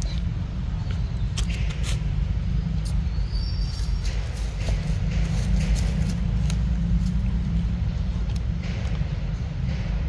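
Steady low rumble throughout, with scattered faint clicks and a brief high chirp about three and a half seconds in.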